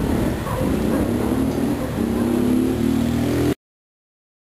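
Loud low rumbling street noise, cutting off abruptly to silence about three and a half seconds in.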